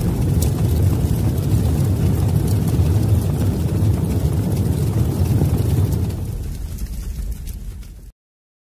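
Deep rumbling sound effect of an animated logo intro: a steady low rumble that fades over the last couple of seconds and then cuts off.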